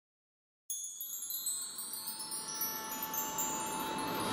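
Wind-chime shimmer: many high, bell-like tones struck together about half a second in, ringing on and slowly fading.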